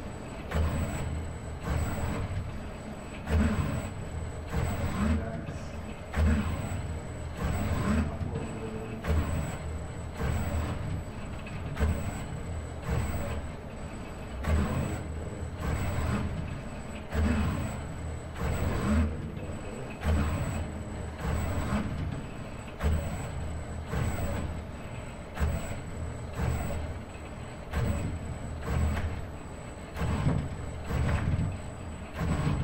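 ABB IRB120 six-axis robot arm's joint motors whirring through a string of short moves, about one a second. The pitch rises and falls with each brush stroke.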